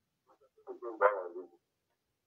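A dog barking briefly: a short run of a few barks about a second in.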